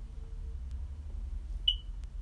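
A single short, high-pitched electronic beep about one and a half seconds in, over a steady low hum.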